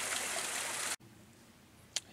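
Mountain brook running: a steady rush of water that cuts off suddenly about a second in, leaving near quiet and a single click just before the end.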